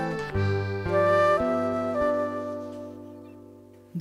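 Acoustic trio of flute, accordion and classical guitar playing a slow, gentle instrumental passage, with long held notes that change slowly and die away near the end.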